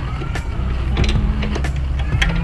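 A few light metallic clicks and taps as motorcycle parts around the foot peg and brake pedal are handled and fitted, over a steady low rumble.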